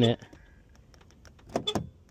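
Exterior door handle of a Land Rover Defender being pulled, a short run of clicks about one and a half seconds in; the door stays shut because keyless proximity entry has been disabled.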